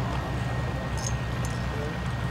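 Piper Cub's engine idling on the ground, an uneven low pulsing.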